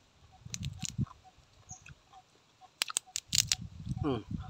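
Cracking and crunching of a rice-field crab's shell as it is broken apart by hand: a few sharp cracks about a second in, then a louder burst of cracks near the end.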